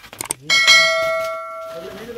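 A metal object is struck once, about half a second in, as clutter is moved aside, and rings with several clear tones that slowly fade, after a few light clicks and rustles.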